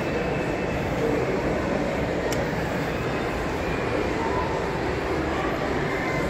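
Steady shopping-mall background noise, a low even rumble with distant voices, and one faint click about two seconds in.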